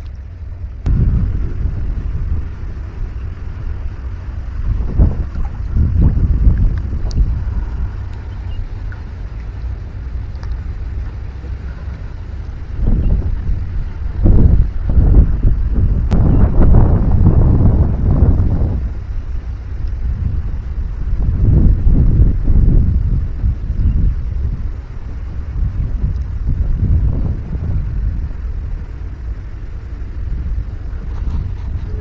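Wind buffeting the microphone in gusts: a low rumbling roar that swells and drops several times, loudest for a few seconds around the middle.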